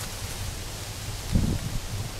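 Outdoor wind noise, a low fluctuating rumble on the microphone, with a brief low sound about one and a half seconds in.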